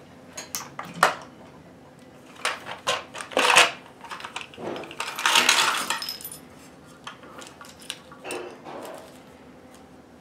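Small metal sewing-machine presser feet and attachments clinking and clattering against a plastic accessory box and each other as it is opened and they are tipped out, with sharp clicks of the plastic case being handled. The longest, densest clatter comes about five seconds in.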